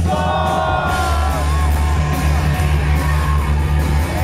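Live rock band with a male lead singer holding long notes into the microphone over the band's steady bass, heard loud through the concert PA.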